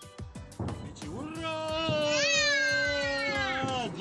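A few sharp pops from fireworks, then a single long drawn-out wailing cry that starts about a second in and is held for nearly three seconds, rising in pitch at its onset.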